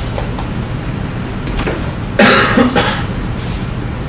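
A person coughing, a short double cough about two seconds in, over steady low room noise.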